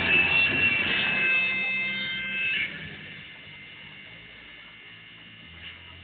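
A live rock band's music ends on a held chord that rings and fades out about two and a half seconds in. After that only a steady low electrical hum from the amplifiers is left.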